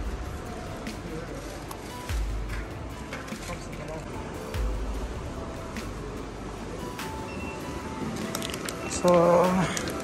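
Large store's ambience: background music and indistinct voices, with three low thumps in the first five seconds.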